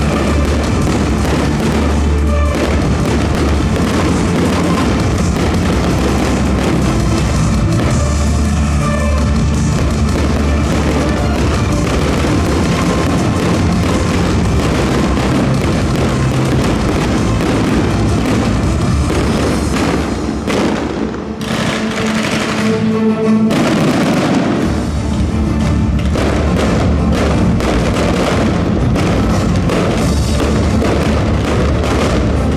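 Loud show music with a heavy bass beat accompanying a fireworks display, with the bangs and crackle of bursting shells mixed in throughout. The music thins out briefly about two-thirds of the way through, then comes back in full.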